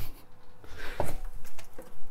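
Objects being handled and moved about: a few light knocks, about a second in and again near the end, with some rubbing.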